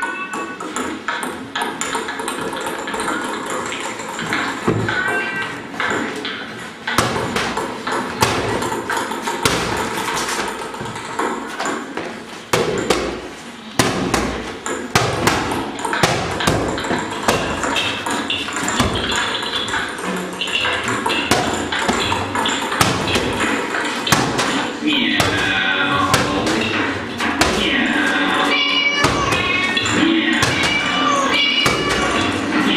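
Many irregular thumps and taps, a dense run of sharp knocks, over a layer of voices and music.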